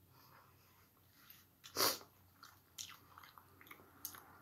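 Snow crab shell being picked apart and eaten: small clicks of shell and chewing, with one loud short burst just under two seconds in.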